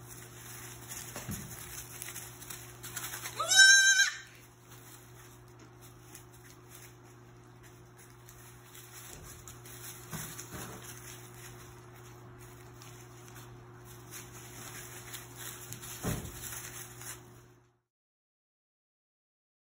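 A single high, rising bleat from a young lamb or kid in a pen of baby sheep and goats, about three and a half seconds in, over a steady low hum. A few soft knocks and rustles from the animals moving in wood shavings follow, and the sound cuts off shortly before the end.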